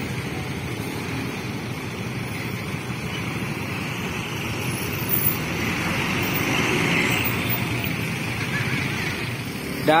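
Road traffic at a junction: a coach, motorcycles and a light box truck running past, a steady mix of engine hum and road noise that grows louder about two-thirds of the way through and then eases.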